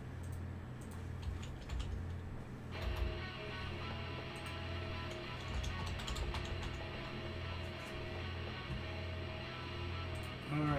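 Computer keyboard typing and clicks over background music with a pulsing bass. A fuller layer of sustained music tones comes in about three seconds in.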